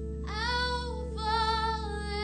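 A woman singing high, held notes with vibrato through a microphone, entering about a quarter second in and pausing briefly near the one-second mark. A steady chord is held underneath.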